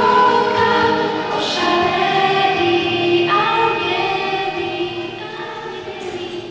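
A girl singing a Polish Christmas carol into a handheld microphone, in long held notes, growing gradually quieter.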